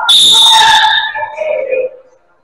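Referee's whistle blown in one loud, shrill blast lasting about a second, followed by shouting voices that stop suddenly near the end.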